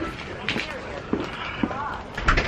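An indistinct, low voice over rustling and knocks from a handheld camera being carried.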